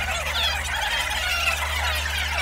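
Rewind sound effect: quick, wavering squeals over a steady low hum.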